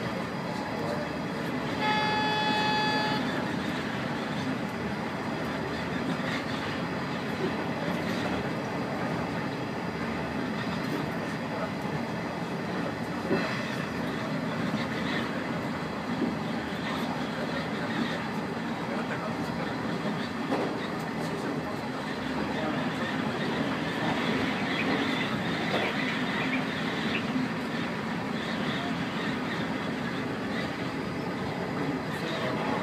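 Train running steadily on the rails, heard from inside. About two seconds in there is a single short horn toot lasting about a second.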